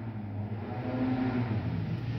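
Low steady background hum, with a faint short tone partway through.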